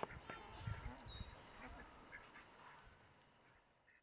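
A flock of ducks quacking faintly in short, scattered calls, the sound fading away toward the end.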